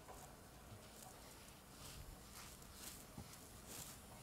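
Faint rhythmic swishing from a Sole SB700 spin bike's friction resistance rubbing on its heavy flywheel as the pedals turn, about two swishes a second, with the resistance being turned up.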